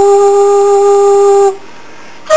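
Homemade bamboo flute, built from three pieces of bamboo, holding one steady note for about a second and a half, then stopping.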